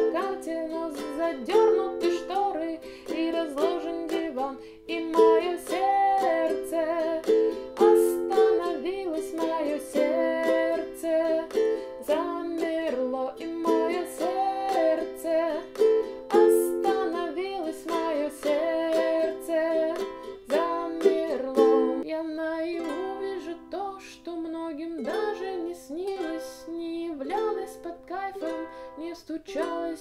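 Ukulele strummed steadily through the chords C, F, G and Am in a down-down-up-up-down-up pattern, as a song accompaniment.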